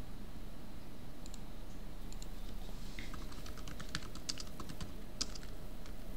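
Typing on a computer keyboard: a few isolated clicks, then a quick run of keystrokes from about halfway through as a search phrase is typed.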